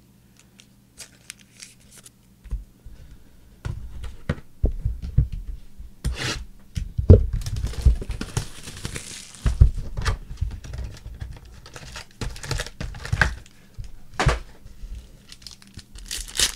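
Plastic shrink-wrap being torn and crinkled off a sealed trading-card hobby box, with knocks and rustles as the box is opened and foil packs are handled. It starts faintly a few seconds in and becomes busy from about four seconds on.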